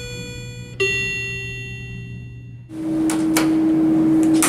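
Short intro jingle: two ringing, slowly fading musical notes, the second about a second in. Near the end it cuts to the sound inside an elevator cab, a steady hum with a couple of sharp clicks.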